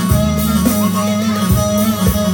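Instrumental interlude of a Turkish folk song played on an electronic Korg keyboard: a melody over held bass notes, with a few drum hits.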